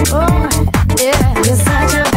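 UK garage and bassline dance music from a continuous DJ mix: a steady beat over deep bass, with a melodic line sliding up and down in pitch.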